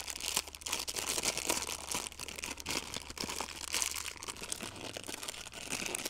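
Thin plastic packaging crinkling and rustling in irregular small crackles as a bagged part is handled and unwrapped.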